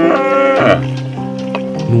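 Background music with held notes, over which a cow moos once in the first second, the call dropping in pitch as it ends.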